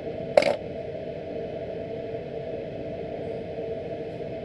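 A single short, sharp clink about half a second in, over a steady background hum.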